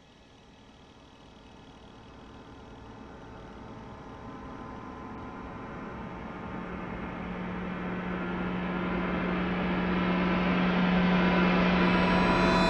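A swelling riser from an opening theme: a hissing wash with faint steady tones grows steadily louder, and a low steady hum joins about halfway through, building towards the theme music.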